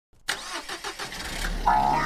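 A sudden intro sound effect: a loud hit followed by a quick run of pulses, about six a second, over a low rumble. Music begins near the end.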